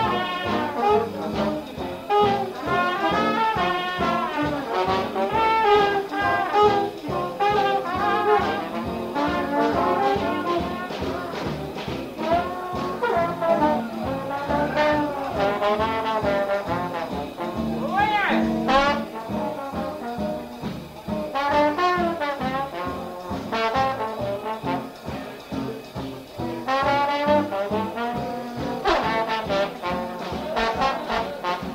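A traditional New Orleans jazz band playing, several horns weaving wavering melody lines over a steady drum beat, in an old recording.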